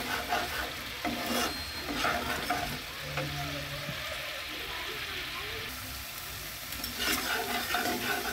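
Thick spice paste frying and sizzling in a black pan, stirred and scraped with a metal spatula. The scraping comes in the first second or so and again near the end, with a quieter stretch of bubbling in between.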